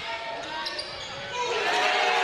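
Basketball game noise on a hardwood court: a ball bouncing and shoes squeaking on the floor, over crowd voices that get louder about one and a half seconds in.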